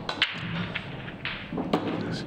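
Break-off shot on a pool table: the cue strikes the cue ball, which hits the racked reds and yellows with a sharp crack. The balls then clatter and roll apart for about a second.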